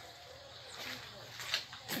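Quiet outdoor background with faint distant voices, and a short click just before the end.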